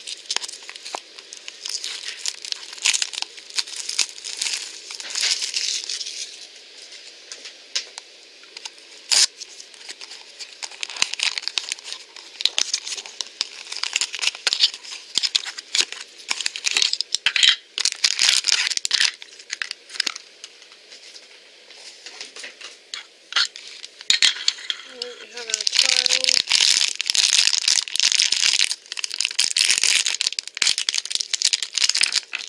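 Clear cellophane wrapping crinkled and torn off a small cardboard toy box, in irregular bursts of crinkling with sharp snaps. The crinkling turns louder and continuous near the end.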